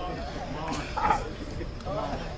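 Speech, quieter than the surrounding sermon, with a louder phrase about a second in.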